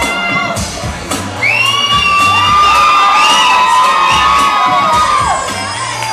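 Audience cheering and whooping over loud stage dance music, with long high shrieks held for several seconds starting about a second and a half in.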